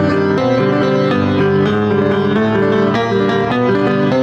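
Old upright piano played with both hands in a continuous flow of quick notes, with a steady loudness throughout.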